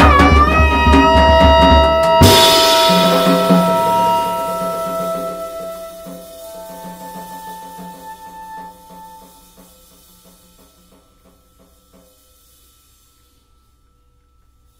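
A quartet of bass clarinet, tenor saxophone, drum kit and electric guitar plays loudly and closes the piece on a final hit about two seconds in. The cymbals and held notes then ring out and die away over about ten seconds, with a few soft taps, until it is nearly quiet.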